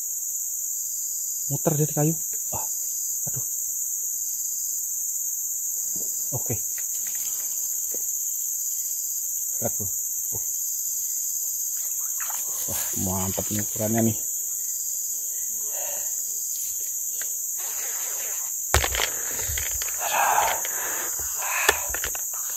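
A steady chorus of forest insects: a continuous high-pitched buzz in two pitches that holds unchanged throughout. Short bursts of a man's voice break in now and then, and rustling handling noise comes near the end.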